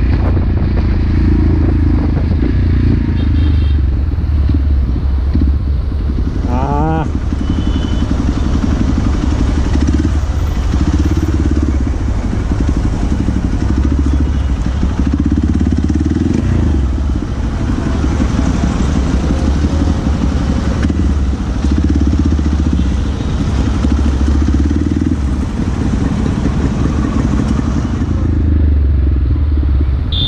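Motorcycle engine running while riding through city traffic, heard from on the bike, with a loud, steady low rumble of engine and road noise.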